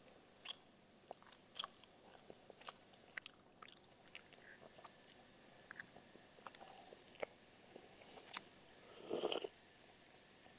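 Faint close-up mouth sounds of a person biting and chewing a soft, chewy piece of pempek lenjer (Palembang fish cake) soaked in cuko, with scattered small clicks and smacks. There is a brief, louder noisy burst near the end.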